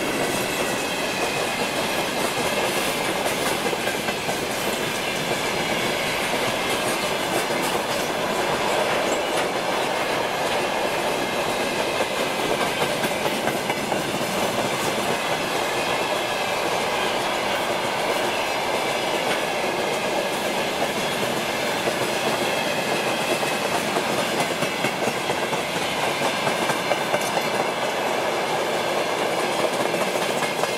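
Freight train of open gondola wagons rolling past close by, its wheels clattering steadily over the rails.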